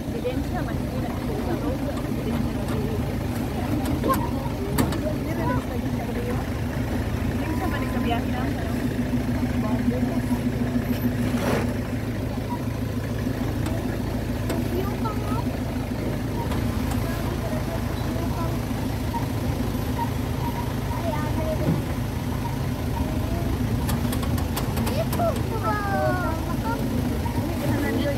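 Motorcycle engines running steadily at low speed, with faint voices mixed in.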